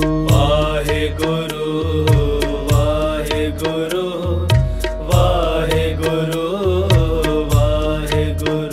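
Devotional Sikh kirtan music. A melody line glides in pitch, phrase by phrase, over a steady drone and a regular hand-drum beat.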